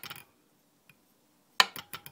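Bosch K-Jetronic air flow sensor plate let go by hand, dropping back onto its stop with one sharp metallic click about one and a half seconds in, followed by a few lighter ticks. A faint tick comes just before.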